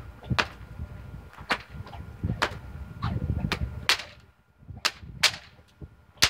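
Three-foot 550 paracord snake whips with dyneema crackers being cracked over and over: about eight sharp cracks, roughly one a second, some coming in quick pairs less than half a second apart.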